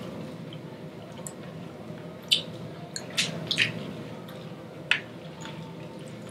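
People chewing fried chicken close to the microphone: scattered wet smacks and sharp little clicks of mouths and crispy skin, several of them between about two and five seconds in.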